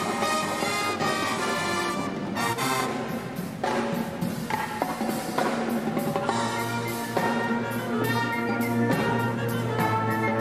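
Marching pep band playing: sousaphones, trumpets and saxophones hold chords over a busy drumline part, with no bass drum in the mix. A low bass line comes in about six seconds in.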